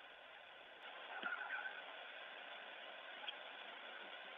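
Faint steady hiss of an open phone or radio voice line, with a brief indistinct fragment of a voice about a second in.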